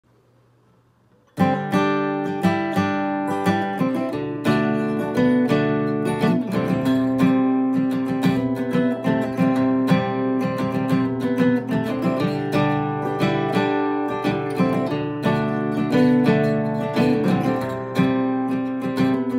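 Solo acoustic guitar with a capo on the neck, playing a chord-based instrumental intro that starts suddenly about a second and a half in, with steady, rhythmic picking and strumming.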